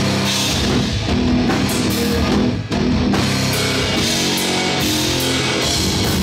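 Heavy metal band playing live: distorted electric guitars over a full drum kit, with a momentary break near the middle.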